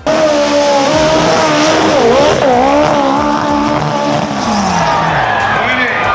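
Dirt-drag race car's engine running loud at high revs, its pitch dipping and climbing back about two seconds in.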